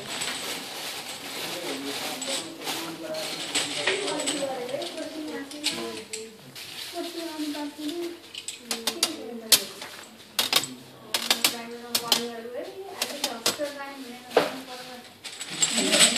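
A person's voice talking indistinctly, with a run of sharp clicks and taps through the second half.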